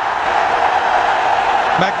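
Large stadium crowd cheering steadily in a sustained roar, celebrating a batsman's double century, heard through a television broadcast.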